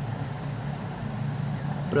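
A steady low mechanical hum with a light hiss, unbroken through the pause.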